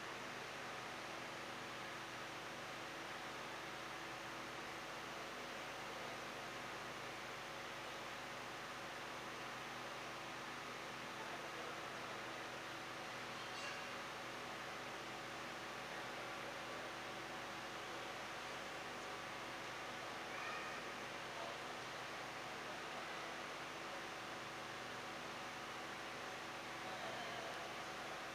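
Faint steady hiss and low electrical hum of an open microphone with nobody speaking, with a couple of tiny faint clicks partway through.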